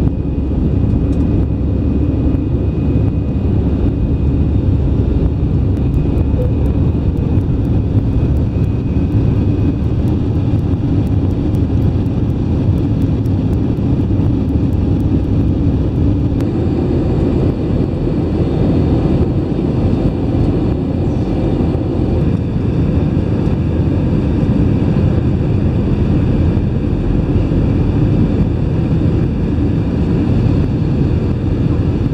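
Jet airliner engines and rushing air heard from a window seat inside the cabin: a loud, steady rumble through takeoff and climb, its character shifting about halfway through.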